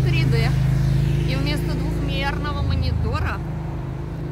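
A steady low motor hum, like an engine running close by, under brief fragments of a woman's voice; the hum eases a little near the end.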